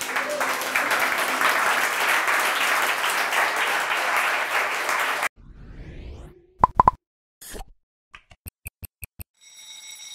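Audience applauding for about five seconds, cut off suddenly. Then a stopwatch-logo sound effect plays: a rising whoosh, two short loud plops, a quick run of about seven ticks, and a bright ringing chime near the end.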